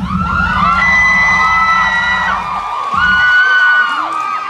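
Audience screaming and cheering, many high-pitched shrieks overlapping, with a low rumble underneath that fades about two seconds in.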